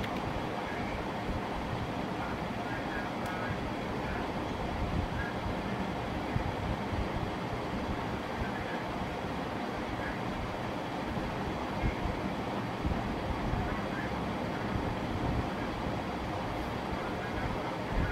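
Steady background noise, an even hum and hiss, with faint voices in the distance now and then.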